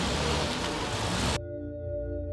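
A minivan pulls away on a dirt road with a low engine and tyre rumble. About one and a half seconds in, the sound cuts off suddenly and gives way to ambient music of sustained ringing tones.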